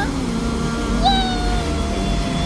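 Music with a high voice singing; about a second in, the voice holds one long steady note.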